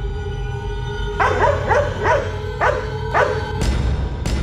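Background music with a held tone and a low drone. From about a second in, a dog barks in a run of short barks over the music, and a heavier hit comes in near the end.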